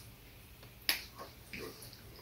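A single sharp click a little under a second in, followed by a few faint soft handling sounds.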